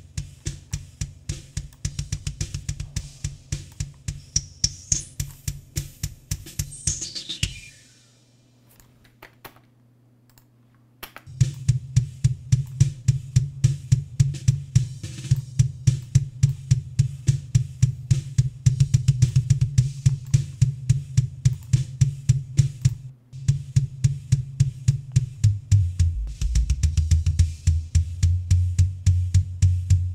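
Recorded kick drum track playing back in a fast run of hits, with snare and cymbals faintly behind, while a narrow, heavily boosted EQ band is swept through it to find unwanted frequencies. First a whistling tone rises high over the hits and falls back. Playback then stops for about three seconds, and when it resumes the boosted band sits in the low end, moving lower near the end.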